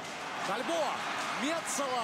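A man's drawn-out, excited vocal calls over the steady noise of an ice hockey arena crowd, rising slightly in loudness as the play builds at the net.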